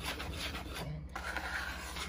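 Wire whisk stirring dry flour in a mixing bowl: a steady scratchy rubbing as the tines sweep through the flour, with a brief break about halfway.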